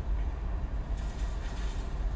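Steady low rumble of a car on the move, road and engine noise heard from inside the cabin.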